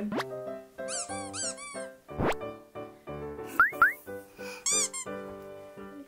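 Light background music with playful squeaky sound effects layered over it: clusters of short arched chirps, a quick rising whistle-like glide about two seconds in, and two short upward squeaks a little later.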